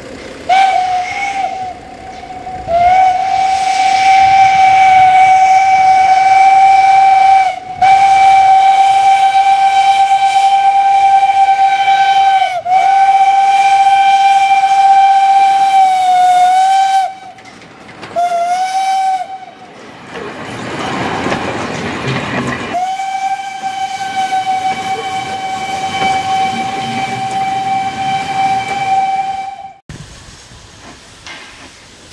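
Steam locomotive whistle sounded six times at a steady pitch: a short toot, three long blasts, another short toot, and a final long blast. Between the last two, steam hisses for about three seconds.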